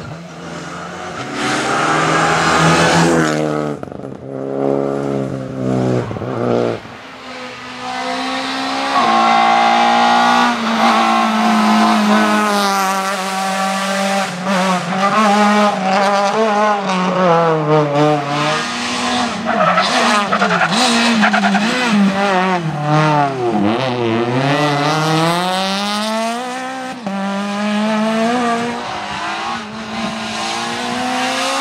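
Rally car engines revving hard on a stage. The engine note climbs and drops again and again through gear changes and braking for the bends, choppy at first, then continuous, with one deep drop and climb about two-thirds through.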